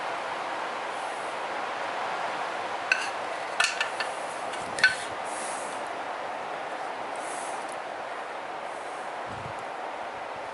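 A few light metallic clinks, about three seconds in, twice more just after and once near the five-second mark, as the aluminium engine side cover is handled and turned over, against a steady background hiss.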